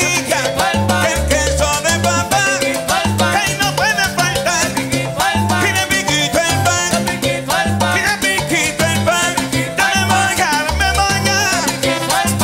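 Live salsa band playing: a lead singer over a bass line, congas and hand percussion with a steady beat.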